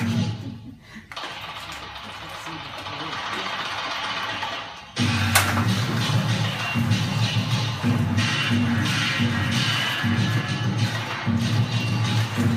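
Water churning and splashing as puppets are worked through the pool, growing louder over the first few seconds. About five seconds in, loud accompanying music comes in suddenly with a heavy low beat and drowns out the water.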